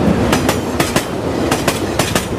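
Moving passenger train heard from aboard a coach: a steady rumble of running noise with the wheels clicking over rail joints several times.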